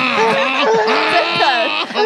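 A man humming and vocalising in a drawn-out, wavering voice with a shaken plastic cola bottle pressed against his throat, so the vibration of his voice passes into the bottle to settle the fizz before opening. Other voices talk over it.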